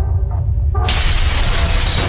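Sound effects of an animated logo intro: a steady deep rumble, then about a second in a sudden loud crash of shattering and breaking that keeps going, with music under it.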